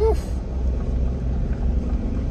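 A car driving slowly on a winding paved mountain road, heard from inside the cabin: a steady low rumble of engine and tyres with a faint steady hum.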